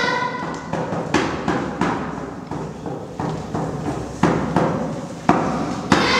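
A hand drum struck in single, unevenly spaced beats, about ten in all, each ringing briefly, during a break in the choir's singing. The singing trails off at the start.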